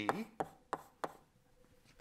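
Chalk striking a blackboard while writing: three sharp taps about a third of a second apart.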